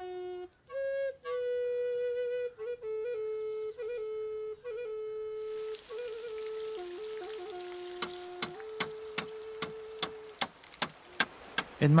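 Background music: a slow solo flute melody of held notes with small bends. About halfway through a soft hiss comes in, and in the last few seconds scattered sharp ticks join it.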